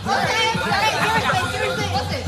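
Several girls' voices shouting and chattering over one another.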